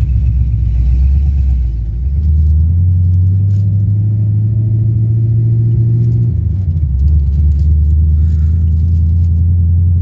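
Ford 351 V8 with Holley Sniper fuel injection running under way, heard from inside the car's cabin as a loud low rumble. The engine note rises to a higher steady pitch about two and a half seconds in, dips about six seconds in, then picks back up to a steady note.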